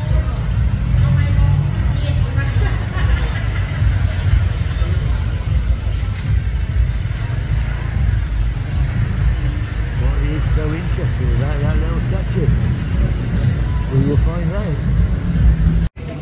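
Busy street ambience: a loud, steady low rumble of traffic, with people's voices talking in the background over the second half.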